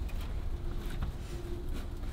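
Faint rustling of hay and light handling noises as a small wooden nesting box packed with hay is moved and set down, over a steady low rumble.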